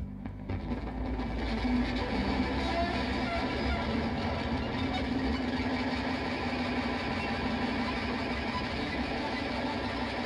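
Live rock band's electric guitars cutting in suddenly with a loud, dense wall of distorted noise and a sustained low drone that holds steady.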